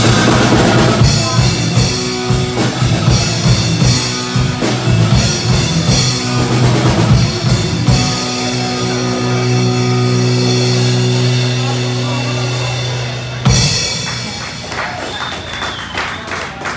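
Live rock band with electric guitars, keyboards and drums playing the ending of a song. About halfway through the band holds one sustained chord for about five seconds, then closes on a sharp final hit that rings down.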